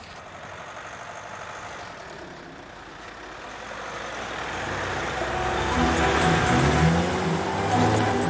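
A motor vehicle approaching, its sound rising steadily louder over the last few seconds, with background music.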